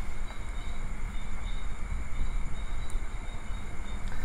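Steady low rumbling background noise with faint steady high-pitched tones above it, and no speech.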